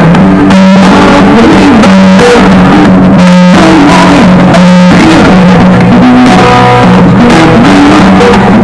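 Live acoustic guitar music, loud and continuous, played through stage speakers.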